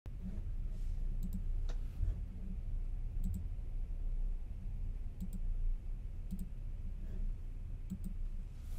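Pairs of short, sharp clicks, a pair every one to two seconds, over a low steady hum.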